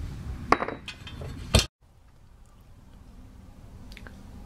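Two sharp metallic clinks about a second apart, the second the louder, as the small worn steel pivot pin just driven out of the chair's tilt mechanism is tossed away; the sound cuts off suddenly right after the second.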